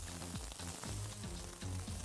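Diced ham, corn and chicken sizzling as they are sautéed and stirred in a skillet, with background music underneath.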